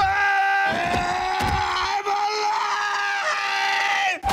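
A man screaming in pain, one long held scream, as an adrenaline needle is stabbed into his chest.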